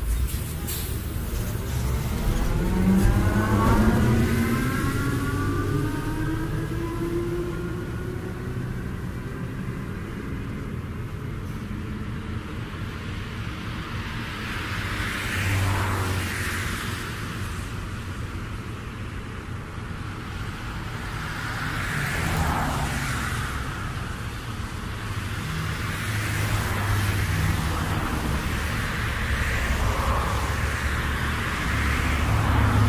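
Road vehicle sounds: an engine rising in pitch as it speeds up in the first few seconds, the loudest part, then vehicles swelling up and fading away as they pass, around the middle and twice more near the end.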